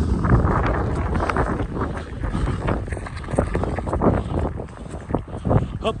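Wind buffeting the camera microphone in the rain, with irregular thumps of footsteps on wet ground.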